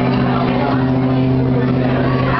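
Live solo acoustic guitar and a man's voice, holding one long low note that stays steady and unbroken.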